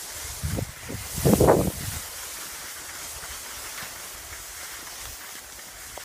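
Skis sliding over packed, chopped-up snow, a steady hiss, with a louder rush of snow or air lasting about half a second near the start.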